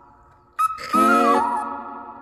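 Background pop music: a held high note fades, then a new sustained melodic phrase comes in loudly about half a second in, with a pitch bend near the middle.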